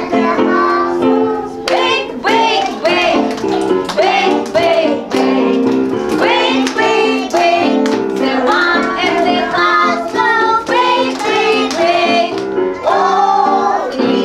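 Young children and a woman singing a song together over an instrumental accompaniment of steady held chords, with hand claps along to it.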